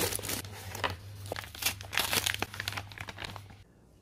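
Plastic packaging crinkling and rustling as a cardboard product box is opened and its contents handled: a run of irregular crackles that stops shortly before the end.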